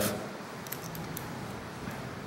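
Faint, light clicks and handling noise as a short-arm hex key is worked into a recess in a small metal rotary table's locking collar.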